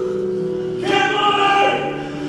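Choir singing held notes of a slow sacred song, with one louder voice standing out over it for about a second in the middle.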